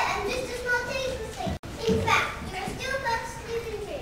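Children's voices talking, with a sudden brief cut-out of all sound about one and a half seconds in.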